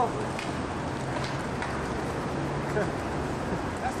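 Steady outdoor city ambience with a wash of traffic noise, and a short laugh near the end.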